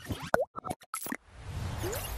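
Motion-graphics outro sound effects. A quick run of short pops and clicks comes first, with one swooping pitch glide among them. About a second in, a whoosh swells up.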